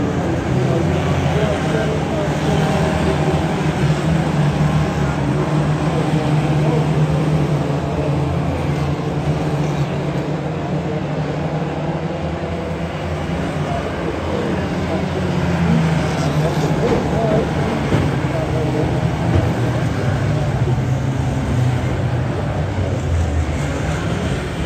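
Several Ministox (Mini-bodied oval racing cars) running together around the track, a steady mixed engine drone whose pitches waver as the cars accelerate and lift through the bends.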